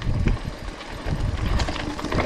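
Mountain bike rolling over a rutted, eroded dirt trail: a low, uneven rumble of tyres on dirt, with light rattles from the bike over the bumps.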